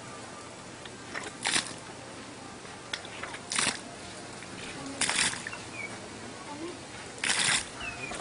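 Treadle pump being worked, with water gushing from its outlet in short bursts, one about every two seconds, four times.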